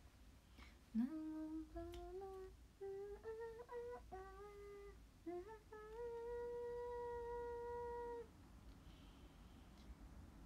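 A woman softly humming a tune: a short run of stepped notes, ending on one long held note that stops a little after eight seconds in.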